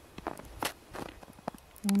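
Footsteps on snow, a quick uneven series of steps, with a voice starting near the end.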